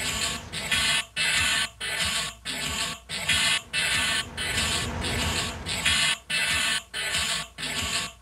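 Rhythmic chopped electronic noise from an industrial-style album segue: bursts of hiss-like noise, each about two-thirds of a second long, cut off by short gaps at an even pace.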